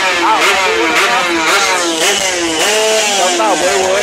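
Small drag-racing motorcycle engine revving in repeated quick blips, the pitch jumping up and dropping back several times, as the bike is held at the start line before launch.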